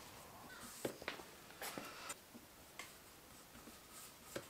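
Faint scattered clicks and light rustling from fingers pressing masking tape down onto a painted alloy wheel, over quiet room hiss.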